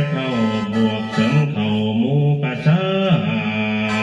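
Lao khaen, a bamboo free-reed mouth organ, playing a melody in chords over a sustained drone, with the notes moving in steps.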